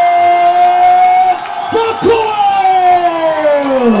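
A man's voice drawing out the winner's name in two long held notes, the second sliding down in pitch near the end, over a cheering crowd.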